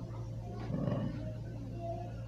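A man's soft, drawn-out "uh" in a pause between phrases, over a steady low hum.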